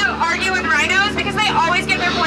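A woman's voice talking over the boat's microphone and loudspeaker, with a steady low hum underneath.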